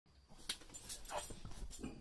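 Small pug-type dog making a run of short, quick sounds about a third of a second apart.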